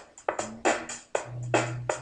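A sampled electronic drum loop previewing in Reason's Dr. Rex loop player: quick, regular drum hits, with a low sustained bass tone under them from about halfway through.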